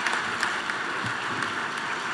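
Large audience applauding steadily, a dense even patter of many hands clapping.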